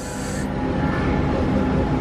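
Rubbing handling noise close to the microphone, over steady indoor background rumble, with a short hiss at the start.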